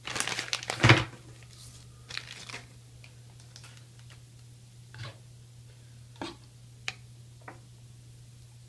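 Hands handling small parts and a plastic bag on a tabletop: a burst of rustling and crinkling with a loud bump about a second in, more crinkling around two seconds, then a few short sharp clicks as parts are set down.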